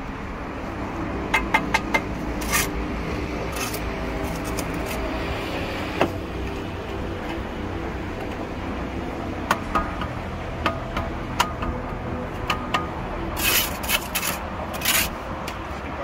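Steel brick trowel scraping and tapping on bricks and wet mortar, a series of short sharp scrapes and knocks that bunch together about a second in and again near the end, over a steady background hum.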